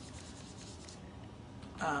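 Foam sponge dauber rubbing ink onto cardstock through a paper template: a soft, scratchy brushing that fades out about halfway through.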